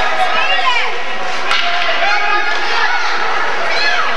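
Spectators' indistinct voices and calls at an ice hockey rink, with one sharp knock about one and a half seconds in.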